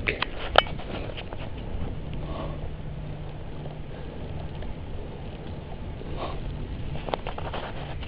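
Steady rushing riding noise from a moving bicycle, heard through a head-mounted camera's microphone: wind on the microphone and tyres rolling on the road. A few light clicks come near the start and again about seven seconds in.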